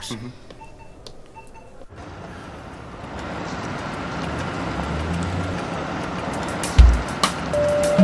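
A few soft electronic beeps from a patient monitor, then a car drives in and pulls up, its engine and tyre noise growing louder. Near the end come two deep thumps, and music starts.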